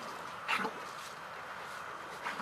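A dog giving one short cry about half a second in.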